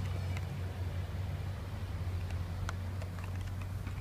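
Steady low background rumble with a few faint clicks and rustles as carded Hot Wheels cars in plastic blister packs are handled.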